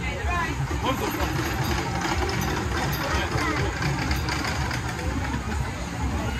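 Spinning kids' flying ride in motion: a steady low rumble from its machinery, with children's and bystanders' voices over it.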